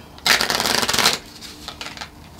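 A deck of cards shuffled by hand: a quick run of rapid card flicks lasting about a second, followed by a few faint taps as the deck settles.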